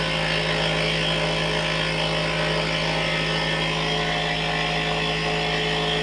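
Taig CNC mill's spindle motor running steadily while the end mill takes a heavy cut through a wooden workpiece: a constant hum with an even hiss of cutting over it.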